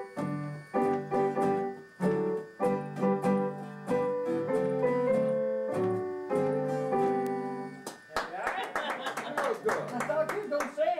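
Piano played in chords and single notes for about eight seconds, then acoustic guitar strumming takes over near the end, with voices mixed in.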